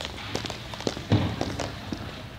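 Irregular light taps and knocks with a duller thump about a second in: footsteps and rolled floor mats being moved on a hand truck over a rink floor.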